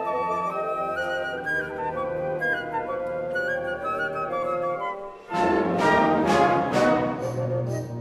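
Concert band music: a flute solo melody over soft band accompaniment, then after a short break about five seconds in, the full band comes in loudly with brass and several strong accented chords.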